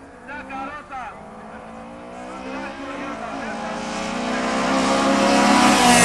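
Drag-racing cars at full throttle down the strip, their engine note growing steadily louder as they approach, with a rush of noise as they come close at the end. A brief voice is heard in the first second.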